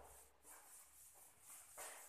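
Faint rubbing strokes of a cloth duster wiping chalk off a blackboard, a short swish about every half second.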